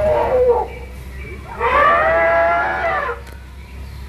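Recorded elephant calls from an animatronic elephant figure: a short call at the start, then one long drawn-out call in the middle.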